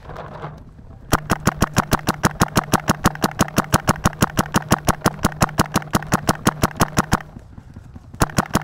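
Paintball marker firing a rapid, evenly spaced string of shots, roughly nine a second, with a steady low hum underneath. The string starts about a second in and stops about seven seconds in.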